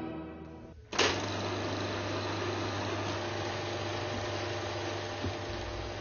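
Film projector running: a steady mechanical whirr over a low hum, starting suddenly about a second in after a short fade-out of music.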